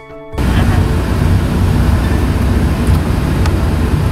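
Steady in-car rumble of engine and road noise heard from inside a car's cabin, cutting in abruptly just after the start, with a couple of faint clicks.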